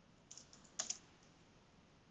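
Computer keyboard typing: a few light key clicks about a third of a second in, then a louder quick run of keystrokes just before the one-second mark.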